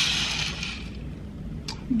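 A soft rustling swish of fabric and handling against the camera's microphone that fades over about a second, then a faint background hush with a small click near the end.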